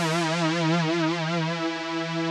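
Software synth pad holding a single note, with a regular vibrato wobble in its pitch brought in by the MIDI modulation wheel. Near the end the vibrato stops as the wheel is brought back down, and the note holds steady.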